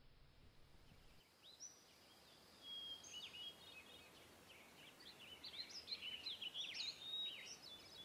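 Faint birdsong: short, high chirps and trills from small songbirds, sparse at first and busier from about halfway in.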